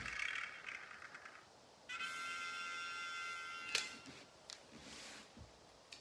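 Sound effects from a random-draw app on a tablet, heard through its speaker: a rattling spin that fades out about a second and a half in, then a steady electronic chime lasting under two seconds, cut off by a click.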